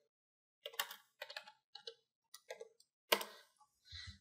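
Typing on a computer keyboard: a string of separate keystrokes, the loudest a little after three seconds in.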